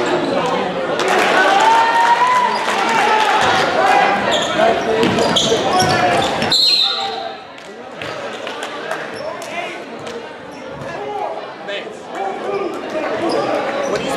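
Basketball game in a large gym: the ball bouncing on the hardwood, sneakers squeaking and players' and spectators' voices. A referee's whistle sounds briefly about six and a half seconds in, stopping play, and the court is quieter after it.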